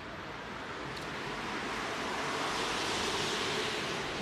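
A steady rushing noise with no distinct events, growing slowly louder.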